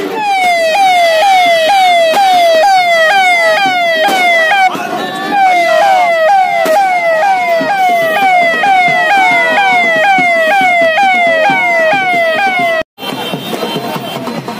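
Vehicle siren sounding a fast, repeating falling wail, about two or three sweeps a second. It cuts off suddenly near the end.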